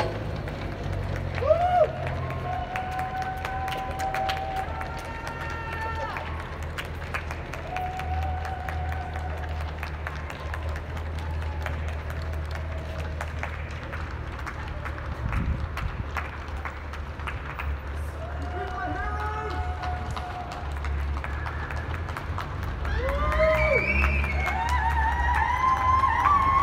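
Scattered clapping from many people at windows and balconies of apartment blocks, with distant shouts and whoops between the claps; the cheering grows louder in the last few seconds.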